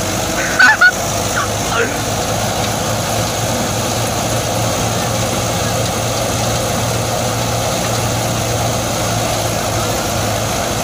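New Holland 640 tractor's diesel engine running steadily under load, driving a thresher as straw is fed into its drum, a constant even drone. Two short, loud high-pitched calls sound about half a second in.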